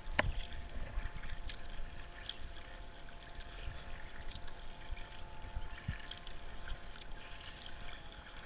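Kayak paddle strokes through calm water: repeated splashes and drips as the blades dip and lift. Wind buffets the helmet camera's microphone with low thumps, and there is one sharp knock just after the start.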